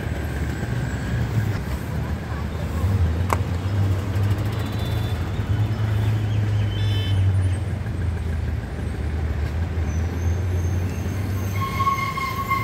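Road traffic at a busy city junction: a steady low rumble of motor scooters, motorbikes, cars and buses. There is a short horn toot about seven seconds in, and a steadier pitched tone comes in just before the end.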